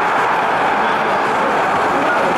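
Football stadium crowd, a steady din of thousands of fans in the stands.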